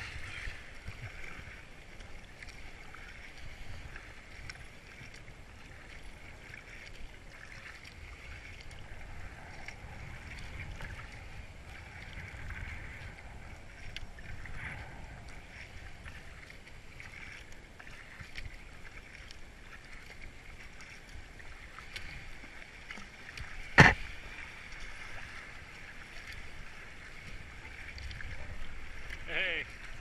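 Kayak moving down a river riffle: steady rush and splash of water around the hull, with paddle strokes dipping in. One sharp knock a little after the middle is the loudest sound.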